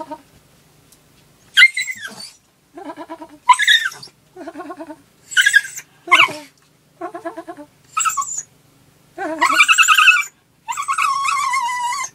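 Dog whining in a run of about ten short pitched cries, the last two longer and drawn out. It is whining to be taken out.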